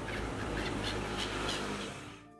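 A flock of gulls calling with short squawks over a steady rushing background noise, fading out near the end.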